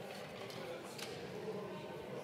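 Low, steady murmur of many voices talking quietly in a large parliamentary chamber, with no single voice standing out.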